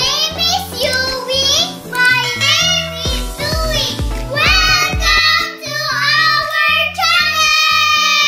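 Children singing a cheerful intro song over backing music with a repeating bass line, ending on a long held note near the end.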